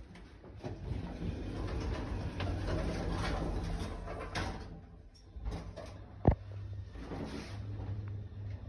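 Otis traction lift heard from inside the car. Its sliding doors run shut with a rattling rumble over the first four seconds or so. About six seconds in comes a single sharp click, then a steady low hum as the car starts moving up.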